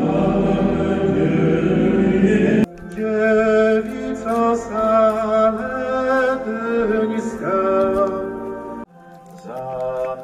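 Pilgrims singing a hymn together in a reverberant church during a candlelight procession, over a low rumble. The sound cuts abruptly a little under three seconds in to clearer, more melodic hymn singing, and drops again near the end to quieter singing.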